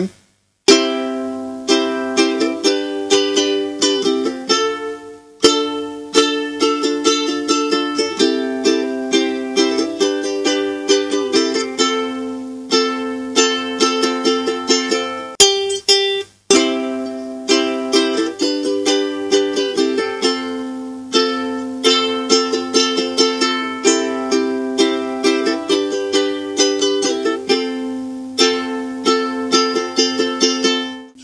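Ukulele strummed in a steady rhythm through a simple chord progression, moving between C and C6 chords and on to F. The playing breaks off briefly twice, once about five seconds in and again about halfway through.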